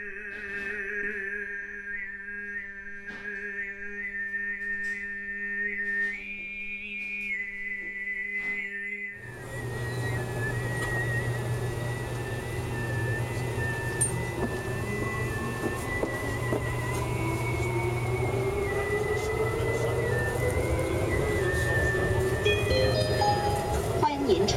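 A man's overtone singing in the Tuvan sygyt style: a steady vocal drone with a high, whistle-like overtone melody moving above it. About nine seconds in, the drone drops lower and the singing goes on over the noise of a moving metro train, with a whine that rises in pitch.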